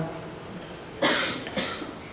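A woman coughs briefly into a handheld microphone about a second in, with a smaller second burst just after.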